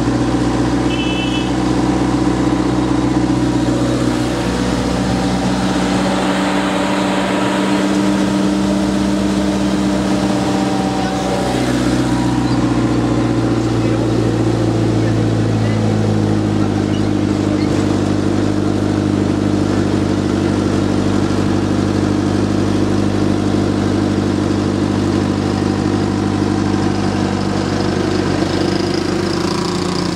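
Truck engine running steadily as it drives, heard from on board, its pitch shifting a few times as the truck changes speed.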